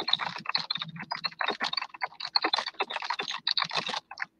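Rapid typing on a computer keyboard, a steady run of several keystrokes a second.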